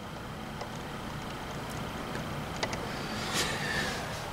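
Steady hiss of rain falling outside the window, swelling slightly toward the end, with a couple of faint clicks.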